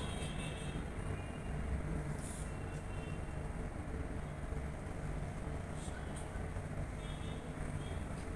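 Room tone: a steady low rumble and hum with no speech, and a faint short hiss about two seconds in.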